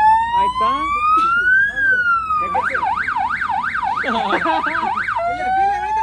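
Electronic siren sounding a slow rising and falling wail, switching at about the middle to a fast yelp of about three rises a second, then back to a slow rising wail near the end.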